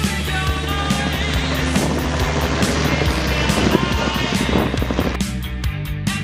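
Rock music soundtrack with a helicopter's rotor sound mixed in over it. The rotor sound drops away about five seconds in, leaving the music alone.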